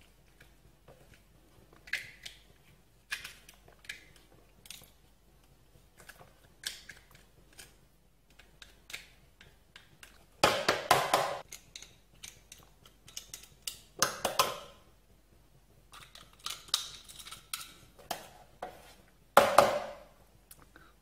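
Meat being picked out of a piece of crab claw shell: scattered small clicks, taps and scrapes of shell, with a few louder scraping bursts about halfway through and near the end.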